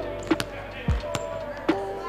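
A basketball bouncing on a gym floor, one deep thud about a second in, with several sharp ticks around it, over background music.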